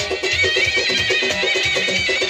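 Amplified band playing fast folk dance music, with a reedy, wavering lead melody over a quick, even drum beat.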